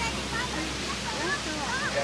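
Steady rush of small waves breaking on a sandy beach, with indistinct voices talking in the background.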